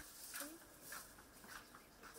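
Near silence: faint room ambience, with one brief faint sound about a third of a second in.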